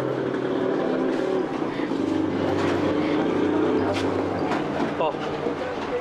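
A bus engine running steadily under a murmur of people's voices; its low hum drops slightly in pitch about two seconds in.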